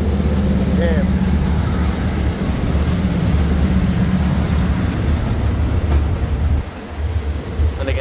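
Diesel railcar engines running with a steady low drone as a diesel multiple-unit train passes alongside at close range; the drone drops away briefly near the end as the last car clears.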